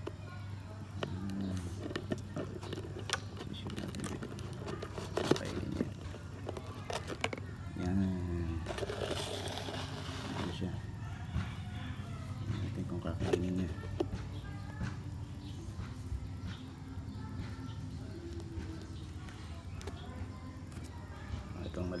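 Faint voices and music in the background over a steady low hum, with a few sharp clicks and a rustle about halfway through, from handling the plastic container.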